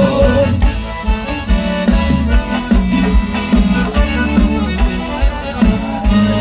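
Live sertanejo band playing an instrumental passage, with accordion over guitar, bass and drums keeping a steady beat.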